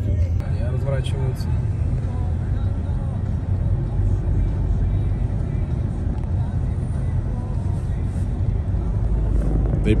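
Car driving at road speed, heard from inside the cabin: a steady low rumble of engine and tyre noise.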